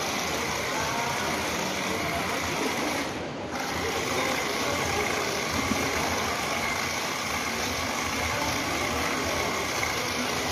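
Small electric motors of a toy remote-control stunt car whirring as its wheels run on a stone floor. The sound is steady and dips briefly about three seconds in.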